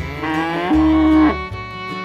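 A cow mooing once: a single call that rises and then holds for about a second, loud above light background music.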